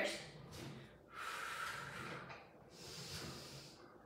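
A woman breathing audibly with exertion: three long breaths, the last one high and hissy.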